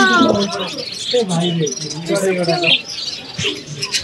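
Many caged budgerigars and other small birds chirping and twittering, with people talking nearby.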